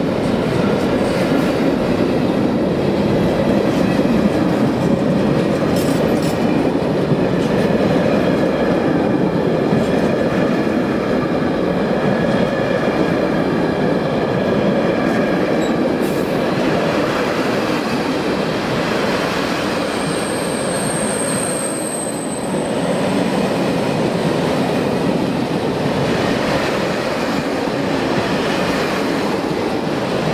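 Freight train of hopper wagons rolling past close by: a steady rumble of wheels on rail, with a brief high squeal a little after twenty seconds in.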